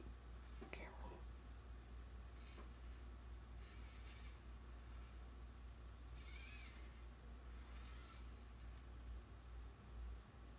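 Faint sounds from an animatronic Teddy Ruxpin playing back a programmed routine: a few short, soft bursts of sound over a steady low hum.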